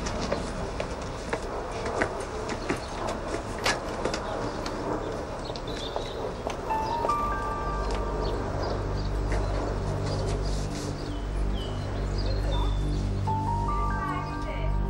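Outdoor ambience with scattered light clicks and knocks, then background score music comes in about halfway: a held low bass note under a few sustained higher notes.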